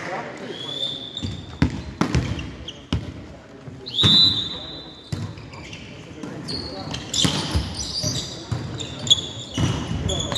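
Indoor volleyball play in a sports hall: sharp ball hits and bounces on the wooden floor, with players' voices echoing. A short, loud high whistle sounds about four seconds in.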